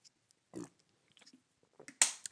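Mostly near silence while a man drinks from a plastic water bottle: one faint gulp or sip about half a second in, then a few tiny mouth clicks.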